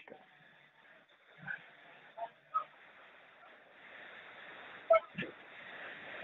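Faint hiss of a phone line between words, with a few short, faint distant sounds in the background and a sharp click about five seconds in; the hiss grows a little louder in the second half.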